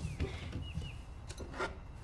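Quiet kitchen handling noises at a counter: a few soft knocks and clicks over a low, steady background hum.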